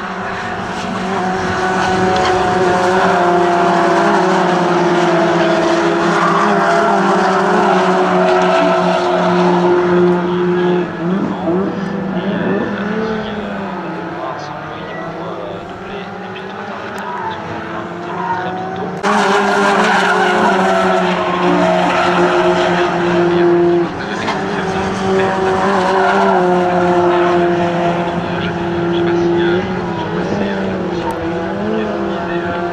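Peugeot 208 race cars running hard on track, their engine notes rising and falling with revs and gear changes. The sound changes abruptly twice, about two-thirds of the way through and again a few seconds later.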